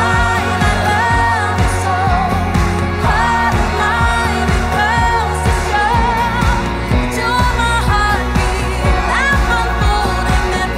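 Pop song with a sung melody of held and wavering notes over a steady drum beat and sustained bass.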